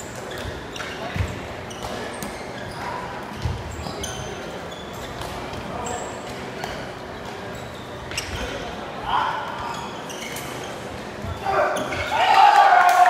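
A shuttlecock rally in a sports hall: scattered sharp knocks and dull thuds of feet striking the shuttlecock and landing on the floor, short shoe squeaks, and players' voices calling out about 9 s in and again near the end, all echoing in the hall.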